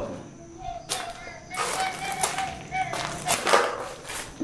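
Strange sounds likened to a monkey's: a steady held tone from about half a second in until about three seconds, with hissing, crackling noise and a few sharp clicks over it.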